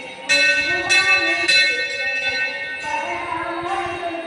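A metal bell struck three times, about half a second apart, each strike ringing on, over devotional music with singing.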